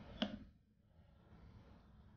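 Near silence: faint room tone, with one short, faint click just after the start.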